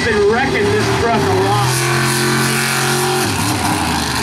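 Mega truck's engine held at steady high revs for about two seconds, under voices in the first second.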